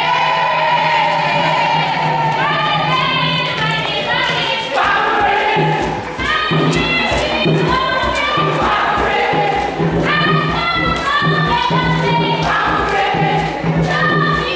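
A group of voices singing a song together, with scattered thuds and knocks from dancing feet.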